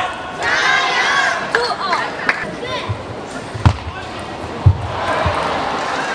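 Table tennis rally: the plastic ball knocking sharply off paddles and table in a string of hits, roughly one every half second to second, the two loudest about a second apart midway. Voices sound at the start, and crowd noise rises near the end as the point finishes.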